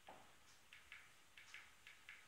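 A quick, uneven run of faint clicks, several in two seconds, from the buttons of a projector's remote control being pressed to step through an on-screen menu.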